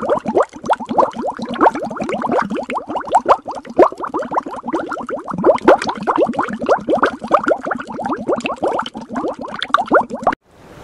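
Underwater bubbling sound effect: a dense stream of bubbles, each a quick blip rising in pitch, several a second.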